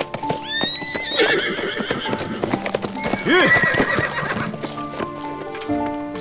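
A horse galloping, its hooves clattering rapidly, with a neigh about a second in and another around three and a half seconds. Background music comes up over it in the last second or so.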